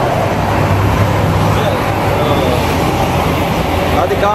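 Steady low rumble of road traffic and running vehicle engines, with faint background voices.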